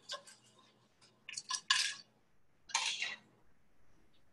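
Wooden spoon scraping and pushing roasted, sugared pecans around a non-stick frying pan: a few short, irregular scrapes and rattles, the longest a little under three seconds in.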